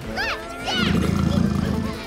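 A saber-toothed cat's low growl, starting just under a second in and lasting about a second, over background music with rising-and-falling whistle-like notes.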